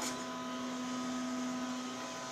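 Steady hum and hiss of an elevator cab's ventilation fan, with a few faint constant tones.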